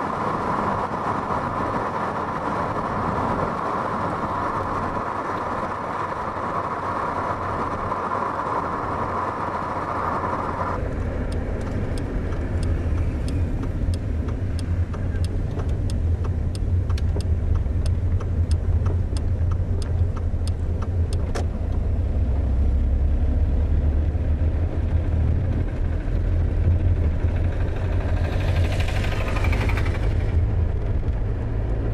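A motor vehicle running with a steady low rumble. About ten seconds in, the sound changes abruptly and a run of regular ticks, about two a second, goes on for some ten seconds. Near the end comes a brief rising sound.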